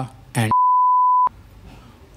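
Censor bleep: a single steady high-pitched beep, about three quarters of a second long, that starts and stops abruptly while the rest of the sound is muted. It blanks out a spoken name.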